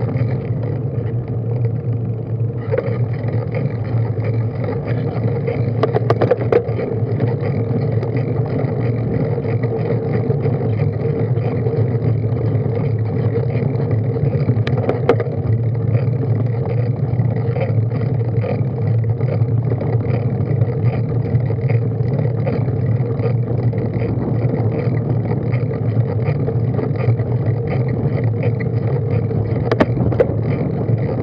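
Steady muffled rumble of a bicycle being ridden uphill, picked up by a bike-mounted camera: tyres on tarmac and the drivetrain turning. A couple of brief clicks come about six and fifteen seconds in.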